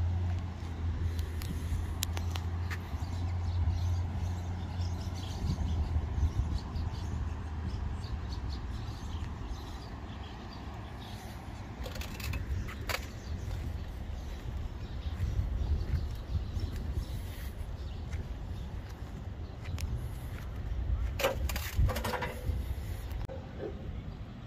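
Outdoor background: a steady low rumble, with a few faint clicks and short chirp-like sounds.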